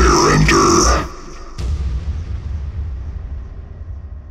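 A voice over dense music that breaks off about a second in, followed by a low rumble that slowly fades out as the track ends.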